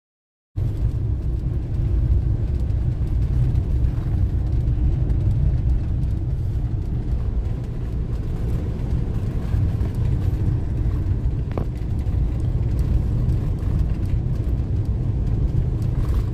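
Campervan being driven, heard from inside the cab: a steady low engine and road rumble that starts suddenly about half a second in.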